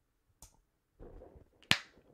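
A single sharp finger snap near the end, preceded by a faint click about half a second in.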